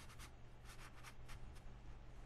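Dry Chinese ink brush swept across paper in a run of short, quick strokes, a faint scratchy rustle.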